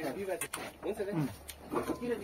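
Quiet conversational speech from men's voices, with a couple of faint clicks.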